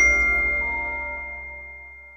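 Logo-reveal sound effect: one bright chime struck with a deep boom under it, ringing out and dying away steadily.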